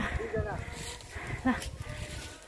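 A person speaking in short fragments over a steady low rumble.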